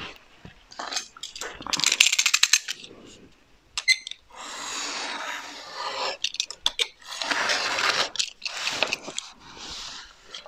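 A snap-off utility knife drawn along a steel ruler, slicing through paper in two long scratchy strokes. Earlier there is a quick run of small clicks and one sharp click.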